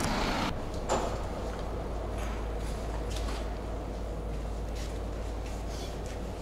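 Church interior ambience: a steady low hum under faint, hollow room noise, with a knock about a second in and a few faint scattered clicks.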